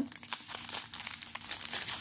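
Small clear plastic bags of diamond-painting drills crinkling and crackling as they are handled, an irregular run of small crackles.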